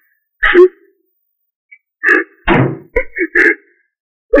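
Several short, sharp knocks or thumps, each separated by silence: one about half a second in, then a quick run of knocks from about two to three and a half seconds in.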